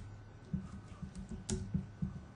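Computer keyboard being typed on: a few separate keystrokes, the sharpest about one and a half seconds in.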